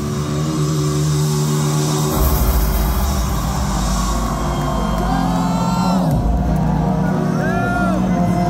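Symphonic black metal band playing live through a PA: held chords sustain over a low drone. In the second half, whoops and whistles sliding up and down in pitch come over the music.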